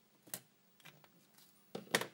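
A few light clicks of a plastic flux pen's tip dabbing flux onto the solder pads of a printed circuit board, then a louder double knock near the end as the pen is set down.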